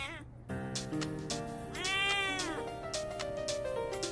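A cat meowing over background music: the end of one meow at the very start, then one long meow that rises and falls in pitch about two seconds in.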